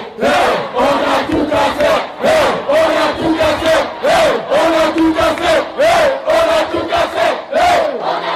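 A group of men chanting loudly in unison while they jump, repeating a short rise-and-fall shout about twice a second.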